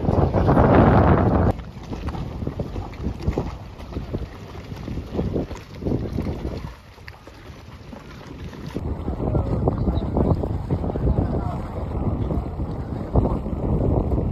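Wind buffeting the microphone in gusts over the wash of the sea, loudest in the first second and a half, easing around seven seconds in, then picking up again.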